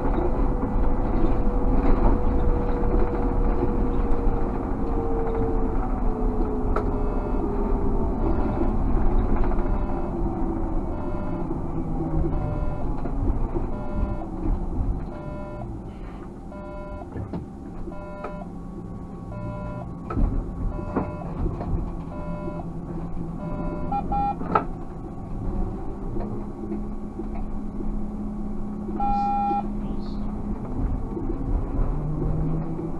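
Inside the cab of a Škoda 30Tr SOR electric trolleybus: running noise with an electric drive whine that falls steadily in pitch over the first dozen seconds as the trolleybus slows. Through the middle a regular ticking about once a second sounds in the cab, and two short beeps come near the end.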